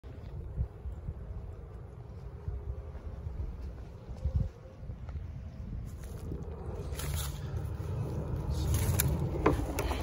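Wind buffeting a handheld phone microphone, a low, fluctuating rumble, with a couple of handling knocks about four seconds in and more rustling toward the end.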